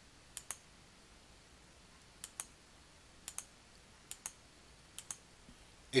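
Computer mouse button clicks while choosing from drop-down lists: five quick double clicks, each a press and release, spaced about a second apart over quiet room tone.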